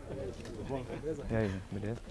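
Indistinct men's voices talking in a low conversation, with no single clear sound standing out.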